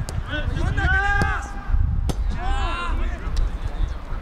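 Footballers' short shouted calls during a passing drill, three high rising-and-falling shouts, with a sharp thud of a football being kicked about two seconds in.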